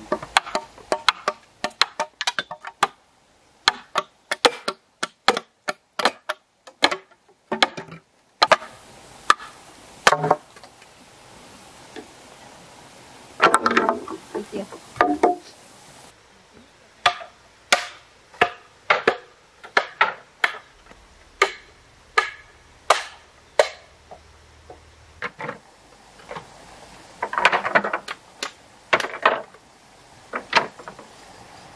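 A machete chopping green bamboo: a long run of sharp, hollow knocks at an irregular pace, some quick and close together, others spread out. Now and then bamboo poles clatter against each other in short dense bursts.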